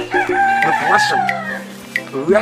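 A rooster crowing once: one long call held for over a second, dropping away at the end.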